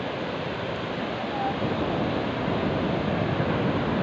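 Steady noise of surf breaking along a beach, mixed with wind on the microphone.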